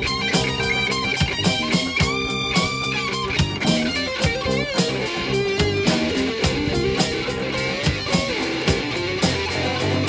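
Small rock band playing an instrumental passage: electric guitar lead with bent notes over strummed acoustic guitar, bass and an electronic drum kit keeping a steady beat.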